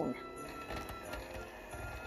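Stand mixer running steadily, beating cream cheese frosting in a glass bowl, over soft background music.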